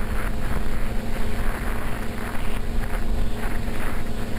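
Twin motors and propellers of a TwinStar RC airplane running at a steady pitch in flight, with wind noise on the microphone.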